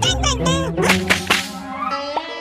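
Cartoon sound effects over background music: a character's squeaky, wordless vocalizing, with three quick, sharp swishing hits about a second in.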